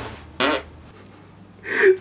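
A single short fart about half a second in, a brief pitched burst, followed by quiet.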